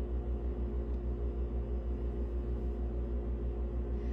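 An electric milk frother running mid-cycle while frothing oat milk: a steady low motor hum that pulses evenly a few times a second.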